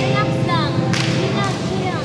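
Sharp whip-like cracks, one at the start and another about a second in, with short falling chirps between and after them, over sustained background tones.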